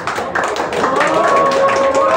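Spectators clapping, a quick patter of many hand claps, after a shot in a pool match. About a second in, a voice calls out in one long held note over the clapping.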